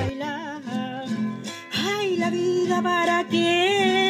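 A woman singing a Chilean cueca to a strummed acoustic guitar, holding long notes that waver in pitch, with a short break between phrases a little under two seconds in.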